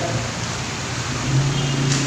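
Electric stand fan running, a steady rush of air from its spinning blades with a low hum in the second half.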